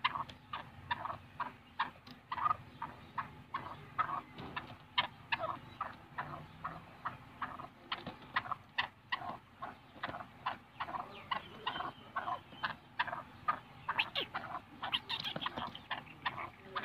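Black francolin giving a rapid, steady run of short clucking calls, about three a second, growing a little louder and quicker near the end.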